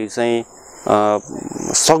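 Steady high-pitched chirring of insects, likely crickets, under a man's speaking voice in short bursts.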